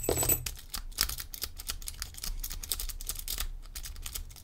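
A city rake rocked and raked through the pin tumblers of a laminated steel padlock under light tension: rapid, irregular small metal clicks and scrapes as the rake skips over the security pins.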